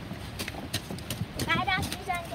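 A string of sharp knocks and taps as children climb out of an SUV's back seat, with a child's high voice calling out about three-quarters of the way through.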